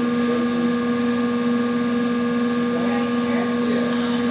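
Steady electrical hum of a few constant pitches, with an even hiss over it.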